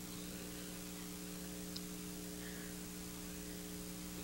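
Steady electrical mains hum, a buzz of several steady tones over a faint hiss, with one tiny tick a little under two seconds in.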